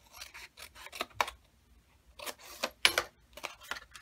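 Scissors cutting through a folded paper envelope: a series of short snips and paper rustles, with a busier run of cuts and handling about two seconds in.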